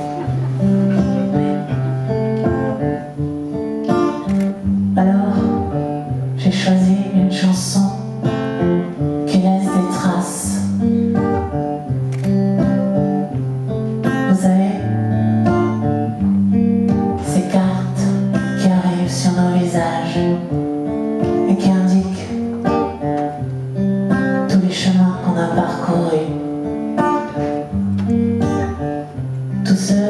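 Acoustic guitar playing a steady chord pattern in the instrumental introduction of a song, with the singing voice coming in right at the end.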